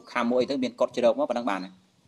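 Speech only: a man preaching in Khmer. Near the end his voice holds one low syllable and then stops.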